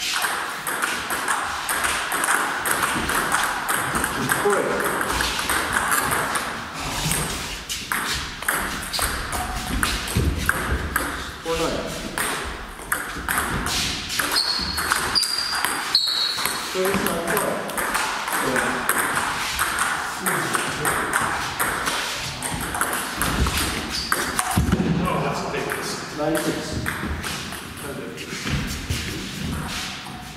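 Table tennis rallies: the celluloid/plastic ball clicking sharply off the bats and the table in quick back-and-forth strokes, with short breaks between points.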